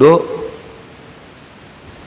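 A man's voice, amplified through a handheld microphone, finishes a word right at the start, then a pause filled only with a steady faint hiss.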